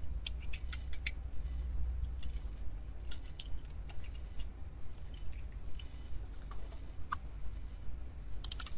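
Sparse, faint computer keyboard and mouse clicks as a line of code is selected, copied and pasted, over a steady low hum.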